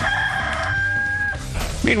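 A rooster crowing: one long call held at a steady pitch that breaks off about two-thirds of the way in.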